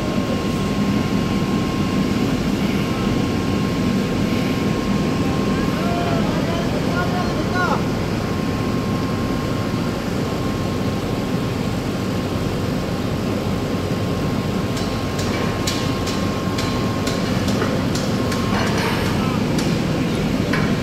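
Steady drone of drilling-rig machinery with a constant high whine through it. A run of sharp metallic clicks and knocks comes in near the end.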